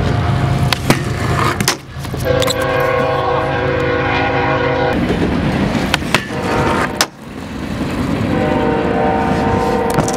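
Skateboard wheels rolling on concrete, with sharp pops and landing knocks scattered through. A held, chord-like tone sounds twice over it: once for a few seconds about two seconds in, and again from near the end.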